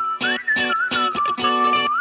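Pop song: a whistled melody line gliding up and down over chords chopped in a steady rhythm, with a plucked-guitar sound.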